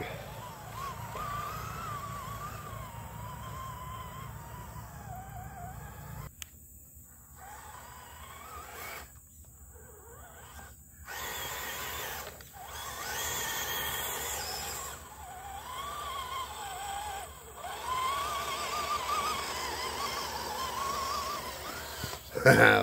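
Electric motor and gears of a Redcat Gen8 V2 RC crawler on a 3S battery whining as it drives in mud, the pitch rising and falling with the throttle. The sound drops out briefly a few times in the middle.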